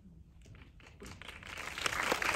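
Audience applause: a few scattered claps, then many hands joining about a second in so the clapping swells fast.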